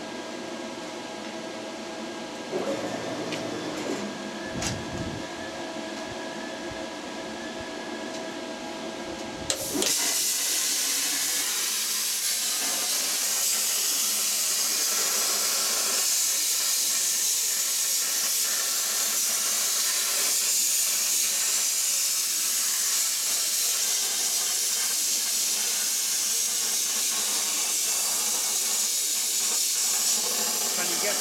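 CNC plasma cutter torch cutting steel plate: a loud, steady high hiss that starts abruptly about ten seconds in. Before it there is a quieter steady machine hum.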